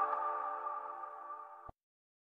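Tail of a channel intro jingle: a sustained electronic chord fading out, cut off abruptly near the end.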